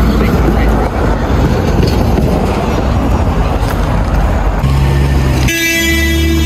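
Street traffic passing, then a vehicle horn starts honking near the end, loud and steady.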